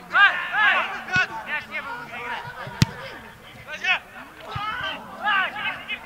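Footballers shouting short calls to one another on the pitch, several voices. A single sharp knock comes about three seconds in.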